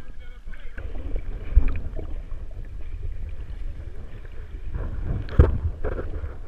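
Shallow seawater sloshing and lapping against a camera held at the water's surface, with a steady low rumble of water on the housing. Two sharp splashes stand out, one about a second and a half in and a louder one about five and a half seconds in.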